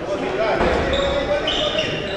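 Futsal players calling out to each other in an echoing gymnasium, with short high squeaks, likely shoes on the hardwood floor, in the second half.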